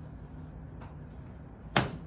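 A single sharp pop near the end as the elbow dislocation simulator's joint snaps back into place during a reduction. Before it there is only low room hum.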